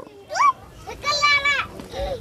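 Children's voices: a short rising call, then a longer high-pitched wavering call about a second in, over a low background hum.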